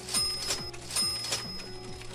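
Cartoon coin-drop sound effects: two bright, ringing metallic clinks about a second apart as coins fall into a piggy bank, over background music.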